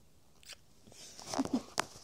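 Kissing: after a quiet second, a quick run of soft lip smacks with a brief hummed voice among them, the last smack the sharpest, near the end.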